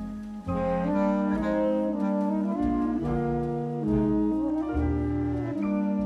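Live jazz sextet playing: saxophones and bass clarinet hold sustained chords that shift every half second to a second, over double bass and drums. There is a brief drop in the sound about half a second in.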